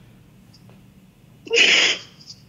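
A person's single short, loud breathy burst, sneeze-like, about a second and a half in and lasting under half a second.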